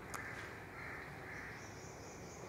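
Faint room tone with a distant bird call and a light click just after the start.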